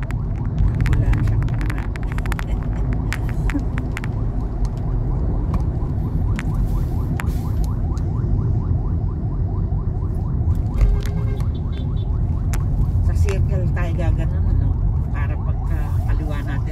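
Steady low road and engine rumble inside a moving car's cabin, with scattered sharp clicks.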